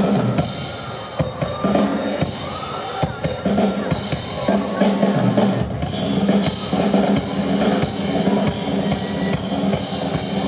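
Live rock band playing amplified, the drum kit loudest: dense kick, snare and cymbal hits with a sustained bass line beneath.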